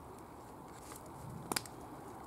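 Faint, steady background hiss with a single short click about one and a half seconds in.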